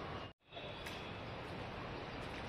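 Faint, steady outdoor background noise in open woodland, broken by a short dead-silent gap about a third of a second in where the sound track cuts.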